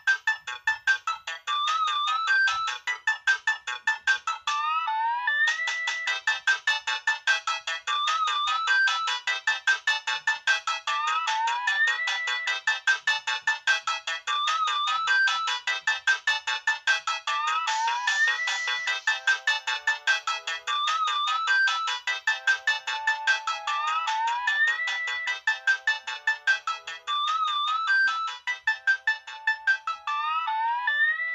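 Nokia 6030 polyphonic MIDI ringtone playing through the phone's loudspeaker: a bright, rhythmic synth melody that stops briefly about five seconds in and then starts over.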